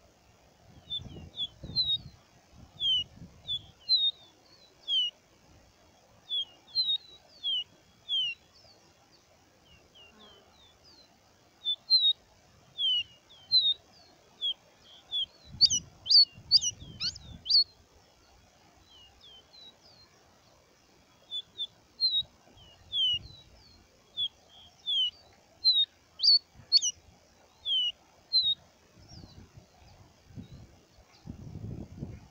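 Caboclinho seedeater singing: short, clear, downward-slurred whistled notes in loose phrases, with a quicker, louder run of notes about halfway through. A few low rumbles sound underneath.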